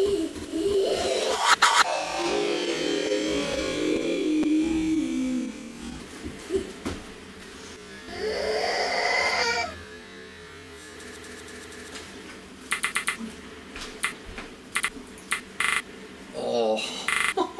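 Heavily edited remix audio with a musical character: a series of stretched, pitch-shifted sounds, including a long held tone and a rising glide. It ends in a run of rapid stutter-cut repeats in the last few seconds.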